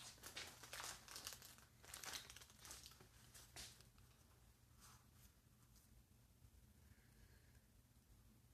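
Near silence, with faint rustling and crinkling for the first few seconds that then dies away, over a low steady hum.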